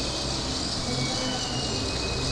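Steady ambient drone: a low hum under an even hiss, with faint sustained high tones running through it.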